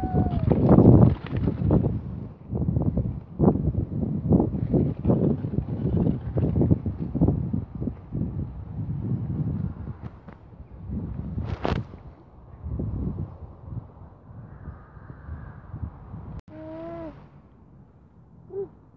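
Wind buffeting the phone's microphone in uneven gusts, a low rumble that eases off after about ten seconds.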